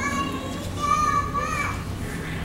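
A small child's high-pitched voice, squealing or calling out in short bends of pitch, the loudest about halfway through, over the low murmur of a large hall.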